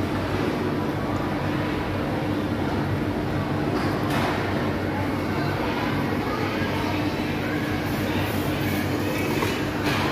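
Indoor ambience of a busy supermarket food court: a steady machinery hum under a constant background murmur of people.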